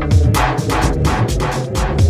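Tech house music from a DJ mix: a steady kick drum about twice a second, with crisp hi-hats and a pitched synth and bass line.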